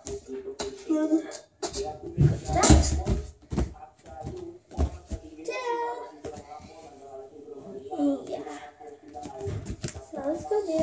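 Knocks and thuds of a gymnast coming down from a home horizontal bar onto a foam mat, the loudest thud about three seconds in, with a voice in the background throughout.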